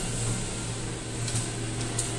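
Steady low mechanical hum with a hiss over it, like workshop machinery running, with a few faint clicks about halfway through and near the end.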